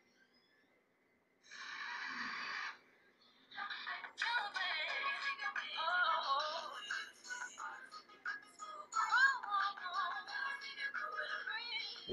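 Rokit One feature phone's FM radio playing a song with singing through the phone's small speaker. After a quiet second or so there is a short burst of sound, then the music with a singing voice comes in about three and a half seconds in.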